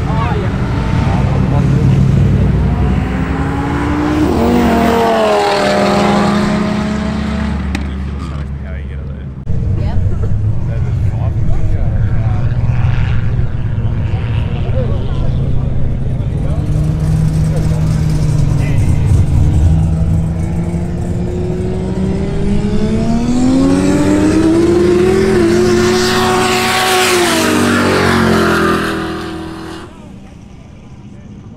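Two pairs of cars accelerating hard side by side in roll races, their engine notes climbing through the gears. First come a VW Golf R's turbo four and an Audi. After a sudden cut about a third of the way in, a Mitsubishi Lancer Evolution and a Honda Civic Type R, both turbocharged fours, wind up and pass, their pitch rising and then fading away near the end.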